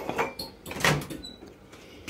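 A few short knocks and clatters from household objects being handled, three in the first second, the last and loudest a little under a second in.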